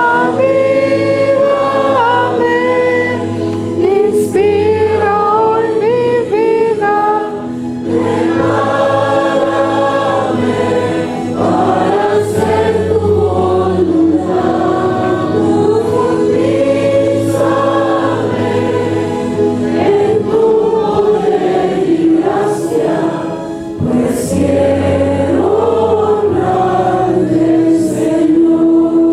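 Two women singing a Christian hymn together into handheld microphones, their voices amplified through the church loudspeakers, in long phrases of held and gliding notes.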